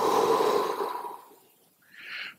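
A man breathing out slowly through the mouth in a deep-breathing exercise: a long breathy rush that fades away over about a second and a half.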